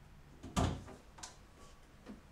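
A single solid knock about half a second in, followed by a lighter click just after a second in, against quiet room tone.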